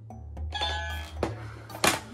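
Light background music over a steady bass, with a bell-like chime about half a second in and a sharp click near the end.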